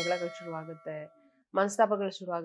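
A single bright metallic ding at the start, ringing on for about a second as it fades, under a woman speaking.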